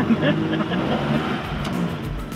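Talking and a short laugh inside the cabin of a moving Lada 2101, its engine running under the voices. Music with a steady beat comes in near the end.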